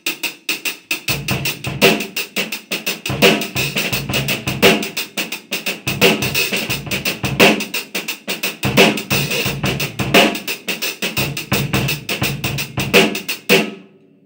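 Drum kit played with sticks: a funk groove in a shuffle feel, a quick steady run of snare and cymbal strokes with louder accents and soft ghost notes between, and bass drum hits in short clusters. It is the shuffle reading of the groove, which the drummer considers the wrong feel for it.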